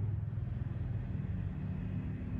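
A steady low hum, with no other sound standing out above it.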